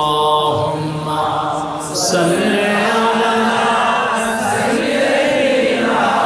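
A man's voice chanting a drawn-out melodic line in the first second or so, then, from about two seconds in, a crowd chanting together in unison.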